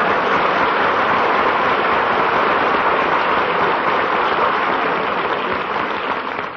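Studio audience applauding and laughing after a punchline, a steady wash of clapping that eases off near the end, heard through a band-limited old radio recording.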